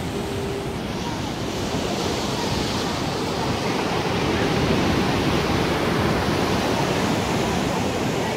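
Sea surf washing against a rocky shoreline: a continuous rushing noise that swells for a few seconds in the middle, then eases slightly.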